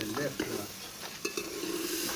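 A metal spoon stirring and scraping in a steel pot on a wood-fired clay stove, with food sizzling in the pot and small clinks of metal on metal.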